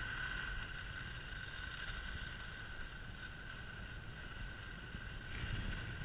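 Skis sliding over groomed snow, with wind rumbling on the camera's microphone and a steady thin high tone underneath. It grows briefly louder and brighter about five and a half seconds in.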